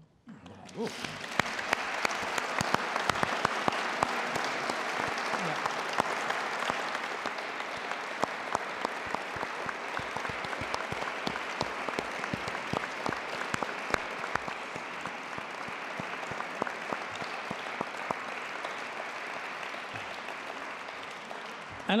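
Audience applauding: many hands clapping, starting about a second in and holding steady, thinning slightly toward the end.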